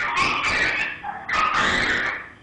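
Two harsh, garbled noise bursts of about a second each, coming in over a caller's phone line on a live broadcast: the line is breaking up just before the call drops.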